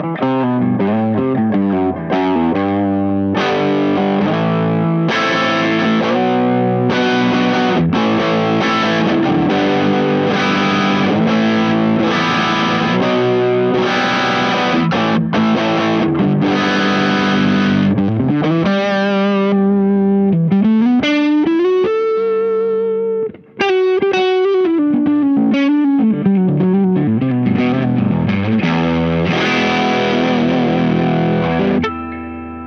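Overdriven electric guitar: a Jazzmaster-style guitar through a Caline Enchanted Tone overdrive pedal into a Dumble-style amp. Strummed chords fill the first half, then single-note lead lines with string bends, with a brief break about two-thirds through.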